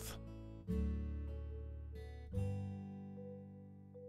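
Quiet acoustic guitar music: a strummed chord rings out less than a second in and another a little past halfway, each fading away.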